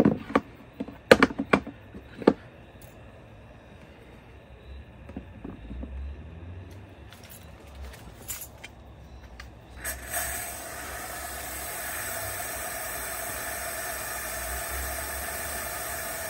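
Knocks and clatter as a fog machine is handled and set into a plastic tool-chest rig. About ten seconds in, the fog machine starts up with a steady hiss and hum as it pumps out fog.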